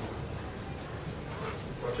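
Faint, indistinct voices over low room noise in a lecture room.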